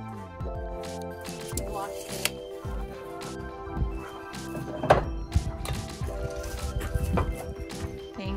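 Background music of sustained, changing notes with a beat, and a few sharp knocks, the loudest about five seconds in.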